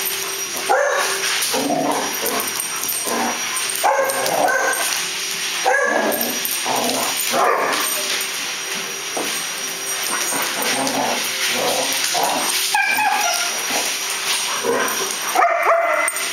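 Dogs barking and yipping in play: short, irregular barks every second or two, with louder ones about four and six seconds in and again near the end.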